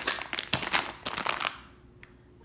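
Clear plastic bags of taffy crinkling as they are picked up and handled, a quick run of sharp crackles that stops about a second and a half in.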